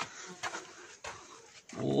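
A man's short voiced "oh" near the end, after a stretch of faint background with a few small clicks.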